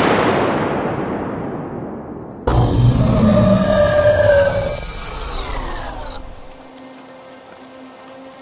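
Dramatic film soundtrack effects: a loud boom-like hit that dies away over about two seconds, then a second loud swell with a deep rumble and falling tones that cuts off around six seconds in. A quieter, dark sustained music drone follows.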